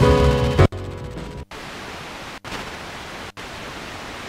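Eton G3 radio's loudspeaker playing music on one FM station that cuts off under a second in, giving way to steady inter-station FM static hiss as the radio is stepped up the band. The audio drops out briefly at each tuning step, about once a second.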